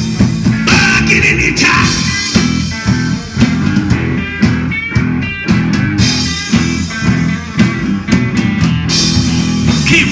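Live rock band playing a blues-rock instrumental passage between sung verses: electric guitar lines over bass and a drum kit keeping a steady beat.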